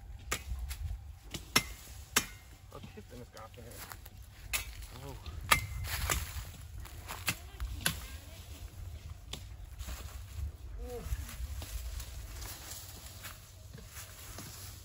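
A man cutting cassava stalks with a knife and moving through dry stalks: irregular sharp snaps and knocks, over a low rumble of wind on the microphone.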